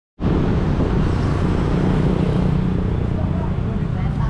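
Steady low rumble of road traffic with a vehicle engine running close by, cutting in abruptly at the start.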